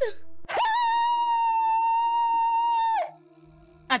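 A woman's long, high-pitched held cry, rising quickly at the start and then held on one steady note for about two and a half seconds before it stops, over a faint steady music bed.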